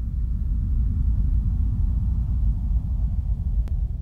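Deep, steady rumble of a logo-intro sound effect, with a single faint click about three and a half seconds in.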